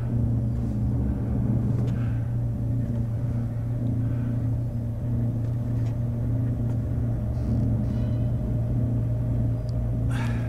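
A steady low rumbling drone with a wavering tone above it, the kind of sustained dark ambience used to build dread in horror sound design.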